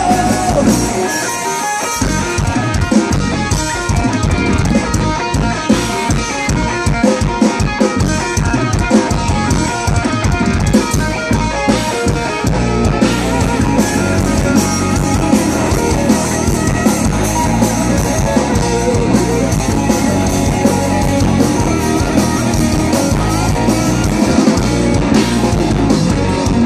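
A live rock band playing an instrumental passage through a PA: distorted electric guitars, bass guitar and a driving drum kit, with no singing. The low end drops out briefly about two seconds in before the full band comes back in.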